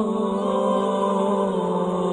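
Unaccompanied nasheed vocals with no instruments. Long held sung notes drop to a lower pitch right at the start and then shift slightly partway through.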